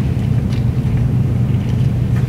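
A steady low rumble or hum fills the room sound. About half a second in there is a faint soft rustle, like a book's pages being handled.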